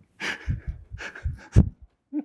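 Laughter: a run of about six short, breathy bursts of laughing, not words.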